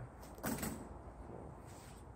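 A brief handling noise: a short rustle or scrape about half a second in, as parts and tools are handled.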